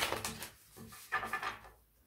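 A deck of tarot cards being riffle-shuffled: the rapid fluttering clicks of the riffle fade out in the first half second as the halves are bridged together, then a second short burst of card noise comes a little after a second in.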